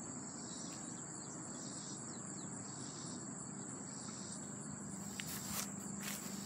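Crickets trilling steadily at a high pitch, with a softer pulsing chorus just beneath, over a low background hiss. A few light knocks come near the end.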